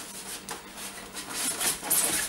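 Handling noise inside a Qidi Tech X-Max 3D printer's enclosure: a string of short rubbing and scraping scuffs as hands push at the print head, which is locked and will not slide without power. The scuffs grow louder toward the end.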